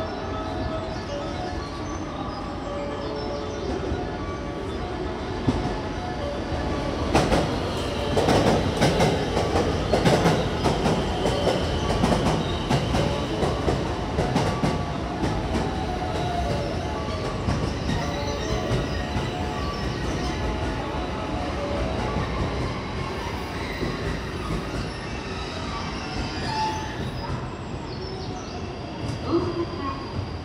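Limited express train pulling into the platform alongside, its wheels rumbling and knocking over the rail joints. The sound is loudest from about 7 to 16 seconds in, then eases off as the train slows to a stop.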